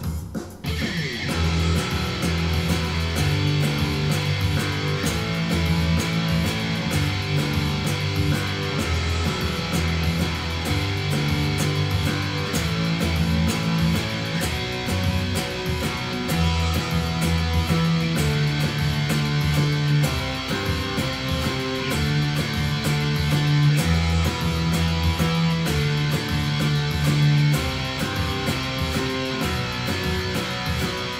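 Electric guitar playing a chugging power-chord riff (E5, G5, A5, B5) at 96 beats per minute, with a steady beat behind it. It starts about half a second in.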